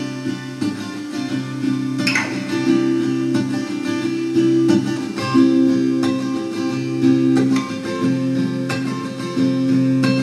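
Solo guitar playing the instrumental opening of a song: chords are struck and left to ring, with a sharp strum about two seconds in.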